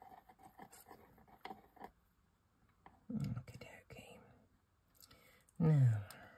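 Faint light ticks and scrapes of a wooden cocktail stick stirring melted sealing wax in a metal melting spoon, with a short murmured voice about three seconds in.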